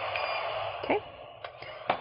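Dental LED curing light's cooling fan running with a steady whir during a cure, cutting off about a second in when the curing cycle ends, followed by a light click near the end.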